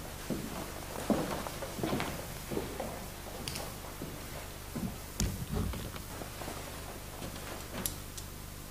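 Footsteps and irregular thumps of handled gear, roughly one a second, with a few sharp clicks, over a steady low hum and hiss.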